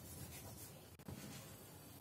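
Faint scratching of chalk writing on a blackboard, with one small tap about a second in.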